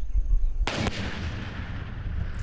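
Controlled detonation of an unexploded explosive device. One sharp blast comes about two-thirds of a second in, followed by a rumble that rolls on and slowly fades.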